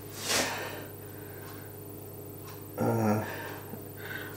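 A man's short audible breath just after the start, then quiet room tone over a faint steady low hum. About three seconds in comes a brief wordless vocal hum.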